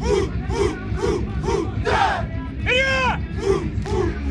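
A unit of paratroopers shouting sharply in unison with each strike of a hand-to-hand combat drill, the short shouts coming about two a second. About three seconds in, one longer drawn-out shout rises and falls in pitch.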